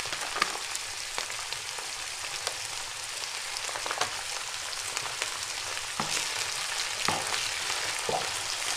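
Bracken fern and onion frying in oil in a frying pan: a steady sizzle with scattered small pops and crackles.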